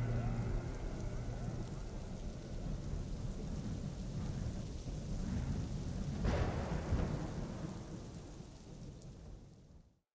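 Ambient soundtrack ending on a low, thunder-like rumble with a rain-like hiss. It swells once about six seconds in, then fades out to silence.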